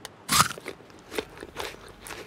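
A bite into a crisp apple: one loud crunch about half a second in, then a few softer chewing crunches.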